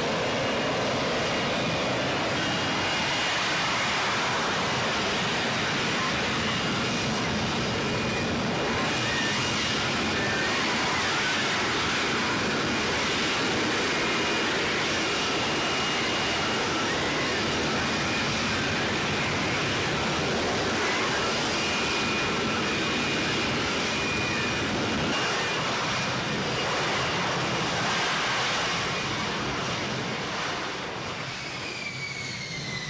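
F-35B jet in a vertical-landing hover, its engine and lift fan running as a steady, dense rush of noise with a faint high whine, easing slightly near the end.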